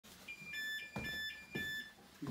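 A stairlift's electronic beeper sounds an alternating two-tone beep, a higher tone then a lower one, repeating about twice a second. Two soft knocks come in between.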